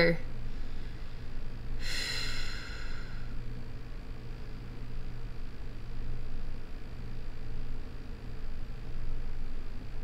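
A woman's single breath, heard as a short sigh about two seconds in, over a steady low room hum.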